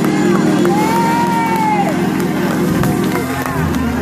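Church music with a steady low accompaniment under a congregation shouting praise and clapping. A long, high rising-and-falling vocal cry is held for about a second, starting a second in.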